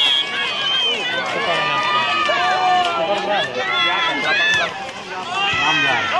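Volleyball spectators shouting and yelling over one another, many voices at once, with a short dip in the noise about five seconds in.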